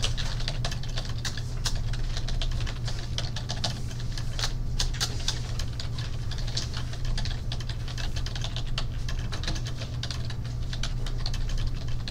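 Typing on a computer keyboard: irregular quick key clicks throughout, over a steady low hum.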